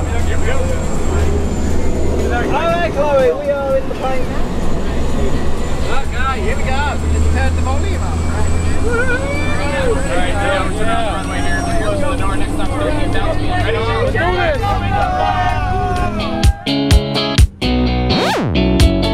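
Steady low drone of a small jump plane's engine heard inside the cabin, with voices and music over it. About two seconds before the end, a music track with sharp, regular beats takes over.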